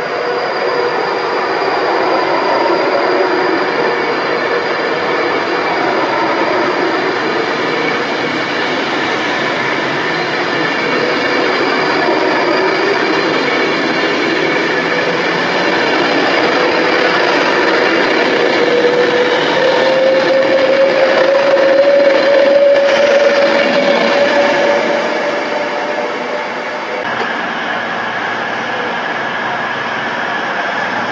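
Virgin Pendolino electric train running past the platform: a steady rumble of wheels on rail with a whine that rises slightly in pitch about two-thirds through, then the noise dies down as the train clears.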